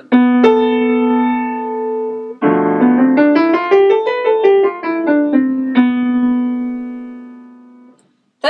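Upright acoustic piano: a chord is struck, then the Locrian mode is played stepwise up an octave and back down over a minor seventh flat-five chord. It ends on a held note that rings and slowly fades away.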